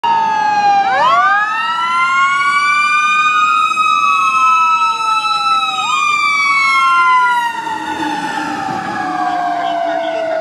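The sirens of a 2020 Spartan/Marion fire rescue truck responding to a call, passing close by. One siren sweeps up and down in a wail. A second tone winds slowly up and then falls steadily in pitch and gets quieter as the truck passes and moves away.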